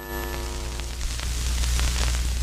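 Channel logo sound effect: a ringing chord fades out within the first half second, leaving an even crackling hiss with scattered clicks over a steady low hum, like an old television warming up.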